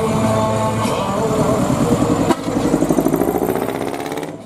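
Decorated truck's diesel engine with a manifold-split (mani-wari) exhaust. It runs loud, then a little past halfway it breaks into a rapid, even throbbing pulse, about ten beats a second, as the truck moves off.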